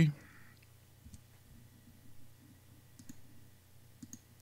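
A few faint, scattered clicks of a computer mouse over a low steady room hum.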